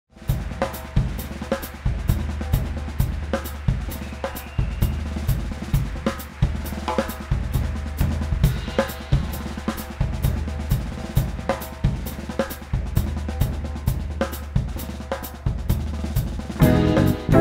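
Drum kit playing alone: a steady rhythm of strikes, about two a second, with ringing cymbals over them.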